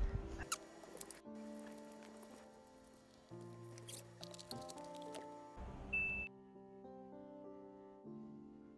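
Soft background music of held notes, with a few light clicks and knocks from hands handling a cardboard box and a fabric carry case on a table during the first six seconds, and a short low thump near six seconds.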